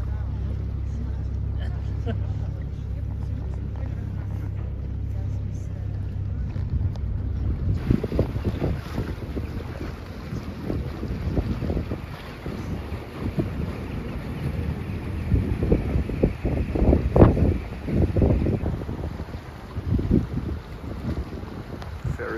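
A boat's engine hums steadily and low while the boat moves over the water. About a third of the way in, the sound changes to gusts of wind buffeting the microphone over the noise of the water, with the strongest gusts near the end.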